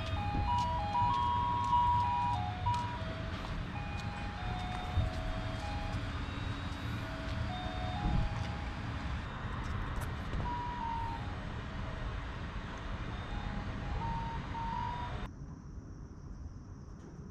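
A simple electronic chime tune from a Christmas light display, played one pure note at a time, over a low rumble on the microphone. It cuts off about fifteen seconds in.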